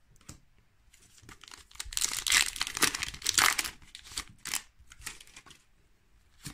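A foil Pokémon card booster pack crinkling as it is torn open, loudest in the middle couple of seconds. After that come a few soft clicks and rustles of the cards being handled.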